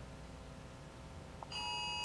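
Quiet room tone, then about one and a half seconds in a steady electronic beep starts, several fixed pitches sounding together, and it carries on past the end. It is an electronic alert tone like the phone emergency alert that had just gone off in the room.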